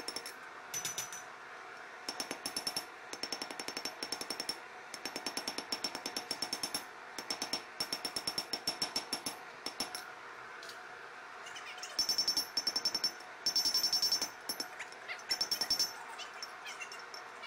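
Hand hammer striking a glowing spring-steel knife blade on an anvil: fast runs of hammer blows, each with a high metallic ring, broken by a pause of a couple of seconds after the middle, and loudest near the end.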